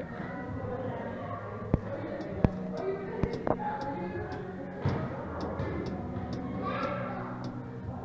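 Loose HVAC louver flap that is not closing all the way, tapping with a few sharp clicks as the draft pushes it open and shut, over a steady low hum.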